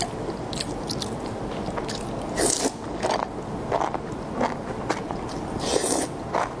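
Close-miked eating sounds: a person biting and chewing food taken from a spicy broth, with irregular sharp mouth clicks and smacks and a couple of longer hissy bursts, one about two and a half seconds in and one near the end.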